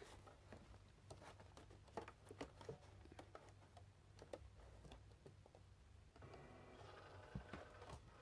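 Near silence with a few faint light clicks. From about six seconds in comes the faint steady whirr of a Cricut Explore Air 2 cutting machine's rollers drawing the mat in.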